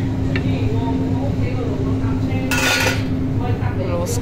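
Metal serving utensil and stainless-steel buffet tray lids clinking, with one longer metallic clatter about two and a half seconds in, over a steady low hum.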